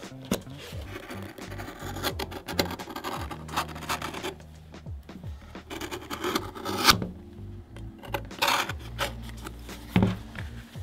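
A knife blade slicing through the thick leather upper of a boot in irregular scraping, rasping strokes, the loudest about two-thirds of the way in, over background music.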